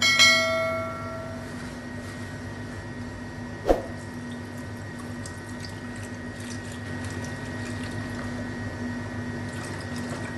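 A notification-bell chime sound effect rings once and dies away, then there is a single sharp knock about four seconds in. In the second half, liquid pours softly into a plastic blender jar over a steady low hum.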